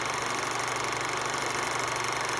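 Old film projector sound effect: a steady mechanical whirr with a rapid even flutter and a faint high whine.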